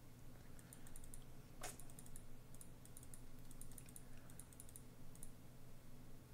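Typing on a computer keyboard: irregular runs of quick key clicks, with one heavier click about a second and a half in. A steady low hum runs underneath.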